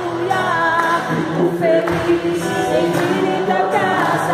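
A group of young children singing a worship song in Portuguese together, with a man singing along on a microphone.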